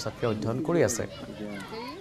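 A voice speaking for about a second, then fainter background voices of children chattering.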